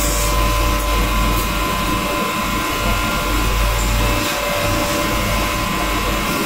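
Electric motor spinning an abrasive grinding wheel on a long spindle with a steady whine, while bundles of steel forks are ground against the wheel, the rubbing rising and falling as the forks are pressed on and lifted off.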